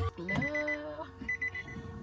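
Electronic beeping: bursts of four or five quick high beeps at one pitch, repeating a little under a second apart, with a short spoken "no" at the start.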